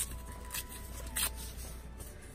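A book page being torn by hand: three short rips of paper, the loudest a little over a second in.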